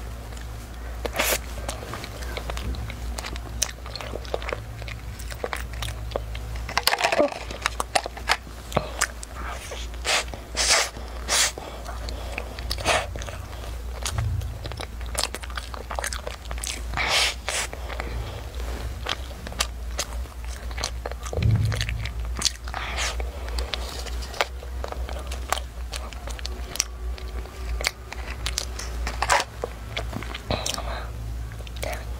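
Flaky egg-yolk pastry being bitten and chewed close to the microphone: irregular crisp crunches and crackles as the layered crust breaks, with softer chewing between bites.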